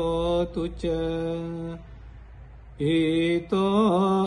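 Buddhist pirith chanting in Pali: a voice holding long, even notes through the closing blessing verses. The chant pauses for about a second midway, then resumes, over a steady low hum.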